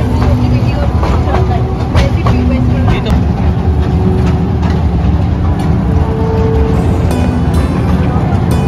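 Steady low rumble with scattered clicks from a small ride-on toy train running along its track.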